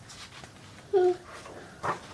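Page of a paper picture book being turned by hand, with paper rustling and a crackle of the page near the end. A short high-pitched whine about a second in is the loudest sound.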